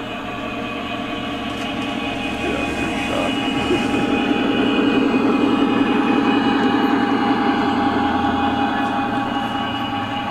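Model railroad diesel locomotive running on the layout's track: a steady rumble of motor and wheels on the rails that grows louder over the first few seconds as it comes close, then holds.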